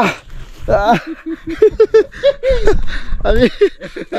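A man laughing hard in a run of short, breathless bursts after taking a tumble down a slope, beginning to speak again near the end.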